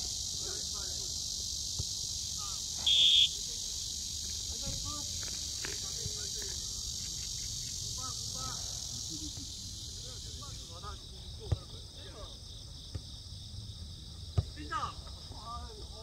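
Steady high, pulsing drone of insects calling in summer trees. A short, sharp whistle blast about three seconds in is the loudest sound. Faint distant shouts and a couple of sharp knocks from the ball being kicked come later.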